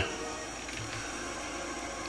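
A steady, faint hiss-like background noise with no distinct sounds in it.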